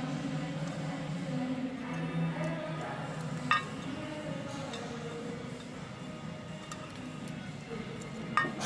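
Radio music playing in the background with faint voices. There is one light clink about three and a half seconds in.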